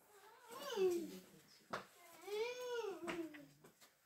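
A young child's high-pitched vocalizing: two drawn-out calls, each rising and falling in pitch, with a short click between them.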